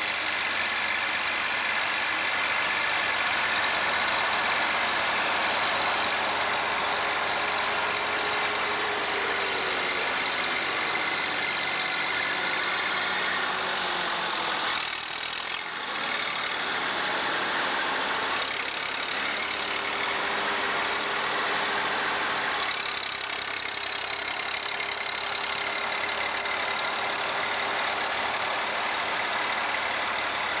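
Farm tractor diesel engines running as the tractors drive over a silage clamp to pack it down. The engine note slides lower about ten seconds in, there is a brief dip halfway through, and the note then runs steady again.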